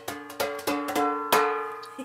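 Hanging metal being struck by hand: about six quick knocks in a loose rhythm, each leaving clear ringing tones, the loudest near the end ringing on longest.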